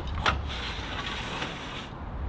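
Citroën 2CV boot lid being slid off its hinge rail: a knock near the start, then a steady scraping slide of the panel.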